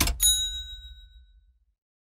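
A single bright bell-like ding from an intro sound effect strikes just as a noisy swell cuts off. It rings out and fades over about a second above a fading low rumble.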